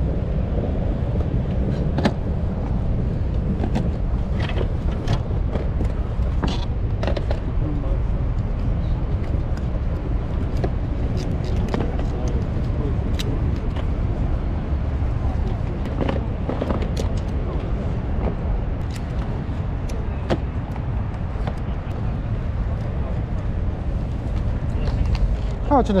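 Outdoor ambience: a steady low rumble with faint background chatter and scattered clicks and knocks of items being handled.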